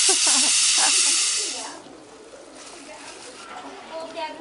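Pressure cooker on a wood fire venting steam: a loud, steady hiss that stops abruptly about a second and a half in.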